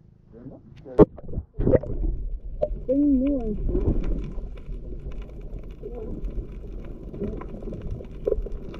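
A camera plunging into the sea: a sharp knock about a second in and a splash, then the muffled, low rumbling noise of the water heard with the microphone submerged, with a brief wavering tone near the three-second mark.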